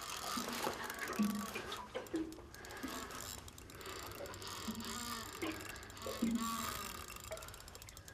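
Small Shimano spinning reel giving a run of fine ratcheting clicks as it is wound against a snapper that is still pulling hard.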